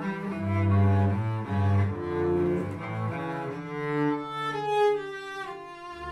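A cello and a double bass playing a bowed duet, the bass holding low notes under the cello's line as the notes change every half second or so.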